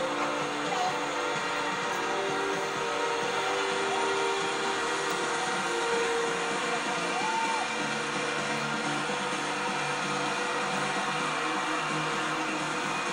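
Music with long held notes over a steady roar of crowd noise, heard through a television's speaker.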